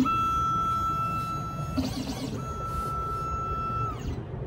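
Xhorse Dolphin II XP-005L automatic key cutting machine's electronic buzzer giving two long, steady, high beeps as it powers on. Each beep lasts under two seconds, with a short gap between them.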